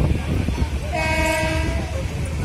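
Train running with a steady low rumble and rattle, and a horn sounding for just under a second in the middle.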